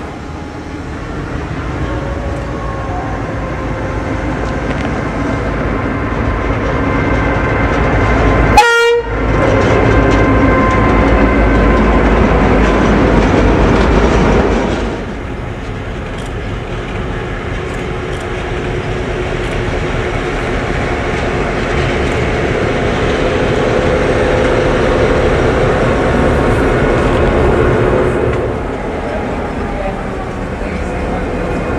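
Preserved CIÉ 141 class diesel-electric locomotives B141 and B142 running, their EMD two-stroke engines working as they move, across several clips joined by abrupt cuts. There is a sharp click at the cut about nine seconds in.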